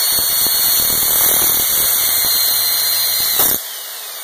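Single-speed 2300 RPM polisher with a 4½-inch abrasive disc grinding the bevel of a steel knife blade: a steady high whine over a harsh grinding hiss. About three and a half seconds in it is switched off, and the whine falls in pitch as the disc spins down.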